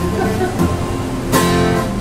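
Acoustic guitar strummed in a steady chord pattern, with one harder strum about one and a half seconds in.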